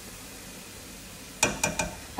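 Faint steady hiss of chopped mushrooms sautéing in a pot, with a few quick taps near the end as flour is spooned in.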